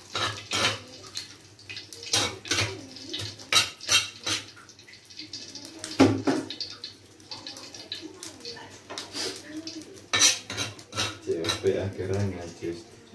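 Dishes, pots and metal utensils clinking and clattering irregularly in a kitchen, with a faint voice now and then.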